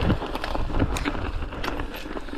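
Mountain bike rolling over a leaf-strewn dirt trail: a steady rumble of tyres and wind on the microphone, broken by irregular clicks and rattles.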